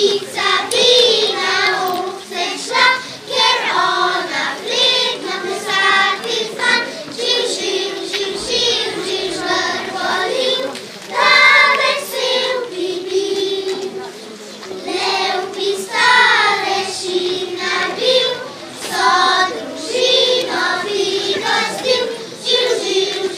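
Children's choir singing a song in unison, the young voices carrying one melody line in short, connected phrases.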